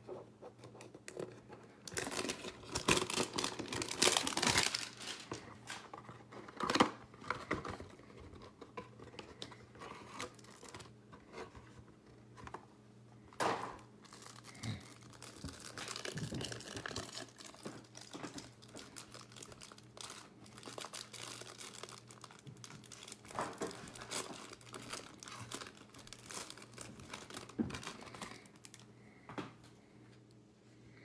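Plastic wrapping on a trading-card hanger box and pack being torn open and crinkled by hand. It comes in irregular bursts of crackling, loudest and longest about two to five seconds in, with shorter rips and crinkles later on.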